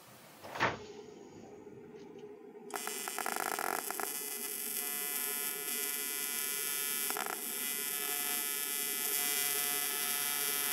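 AC TIG welding arc on thin aluminum from an Everlast PowerPro 205Si: a steady, stable buzz that starts about three seconds in and grows a little louder as the current is raised with the foot control. A short knock comes about half a second in.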